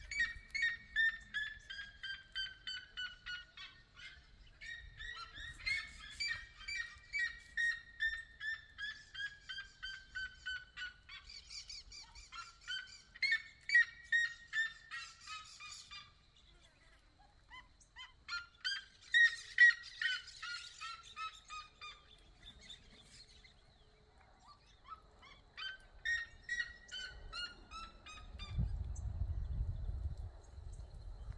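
Red-legged seriema calling: long series of loud yelping notes, a few per second, each phrase falling in pitch, with a second bird's series overlapping at times. A low rumble comes in near the end.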